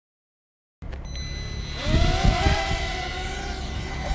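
Electric motors and propellers of a T2M Starvader quadcopter spinning up with a rising whine about two seconds in, then holding a steady whine as it hovers. Low rumbling from the prop wash comes as it lifts off.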